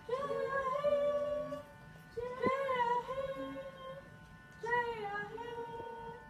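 A young girl singing, holding three long drawn-out notes whose pitch bends and wavers, with short breaks between them.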